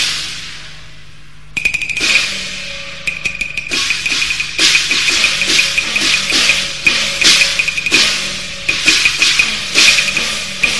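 Cantonese opera percussion interlude with no singing. A crash at the start dies away, then a fast roll of wooden clicks begins about a second and a half in. Struck metal and drum strokes follow in a busy, quickening pattern over a high ringing tone.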